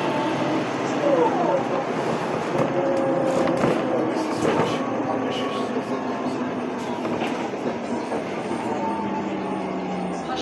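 City bus cabin noise while the bus drives: engine and drivetrain running with whining tones that shift in pitch, over tyre and road noise and scattered rattles and clicks from the body.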